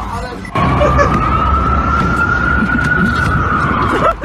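A siren wailing over loud street noise: one long tone that starts about half a second in and slowly rises in pitch.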